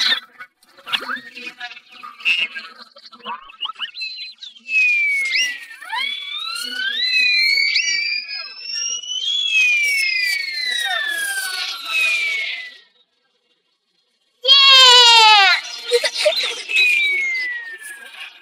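Cartoon sound effects: several whistling tones slide up and down over one another for about eight seconds. After a brief silence comes a loud falling wail.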